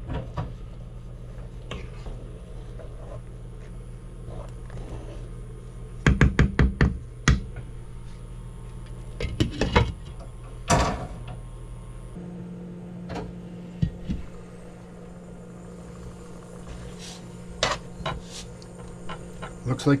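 A glass lid and stainless steel pot clattering: a quick run of knocks about six seconds in, then sharper clinks and one ringing clink near eleven seconds as the lid is set on the pot. A steady low hum runs underneath.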